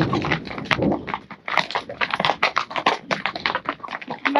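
Hooves of saddle animals clopping on a cobblestone trail, with many quick, uneven clicks at a walk.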